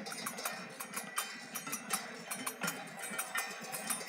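Metal percussion struck in a steady quick rhythm of several ringing strikes a second. Faint group chanting runs beneath it in the gap between sung lines of the kirtan.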